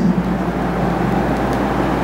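Steady background hum and hiss, with no distinct events.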